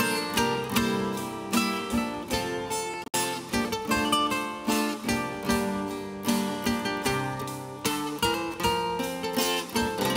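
Live church music with a strummed acoustic guitar to the fore, playing steadily, with a momentary dropout in the sound about three seconds in.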